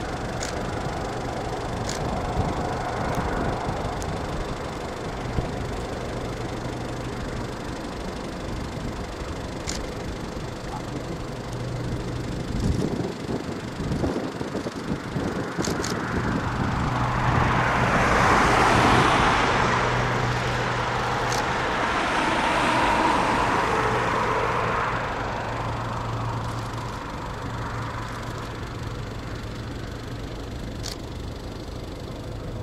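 Boeing 737 CFM56 turbofan engines at taxi power: a steady jet rumble and hiss that swells as the aircraft rolls past, loudest about two-thirds of the way through, then fades.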